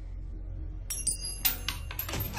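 Low, steady film-score drone; from about a second in, several sharp crashes of breaking glass with bright, ringing high tones.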